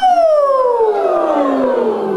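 A woman's sung voice sliding down in one long, smooth glide from high to low, a vocal siren warm-up, with other voices joining the descent about a second in.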